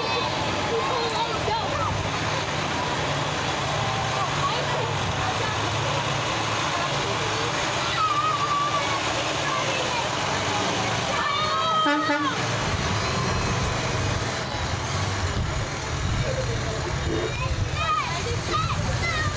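Fire trucks' engines running as they roll slowly past, with tyres hissing on the wet street and a crowd talking throughout. A few brief higher-pitched calls or whistles stand out, one about a second in past the middle.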